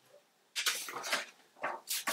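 Handling sounds as a hollow white vinyl shutter bay post is lifted off a paper template and set aside: a series of short scraping, rustling sounds starting about half a second in.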